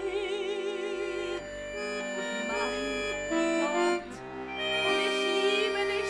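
A woman's held sung note with wide vibrato over button accordion chords, ending about a second and a half in. The chromatic button accordion then plays alone: sustained chords with a short melodic line moving above them.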